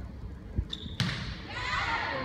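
A volleyball struck twice, about half a second apart, the second hit sharper, followed by players' and spectators' voices calling out.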